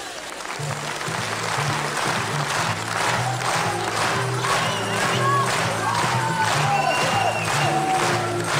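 Audience applauding in a hall, with music starting under it: a bass line comes in about half a second in and a melody joins a few seconds later.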